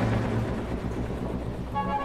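Symphony orchestra playing a contemporary work: a held chord breaks off into a low rumble, and a new sustained chord enters near the end.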